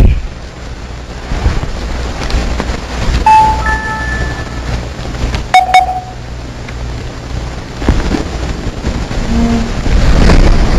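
Low rumbling noise with handling sounds at a desk, broken by a few short electronic beeps from a mobile phone a few seconds in and a couple of sharp clicks with another short beep about halfway through.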